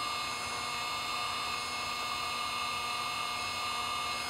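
Small USB-powered sensor vacuum from a Delkin DSLR cleaning kit running steadily, its brush nozzle drawing dust from inside a camera's lens mount. It gives a steady motor whine over an airy hiss.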